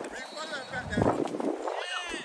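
Voices of football players calling out across the practice field, with no clear words, and a louder shout about a second in.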